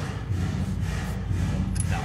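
A steady low machine hum, with a faint click near the end.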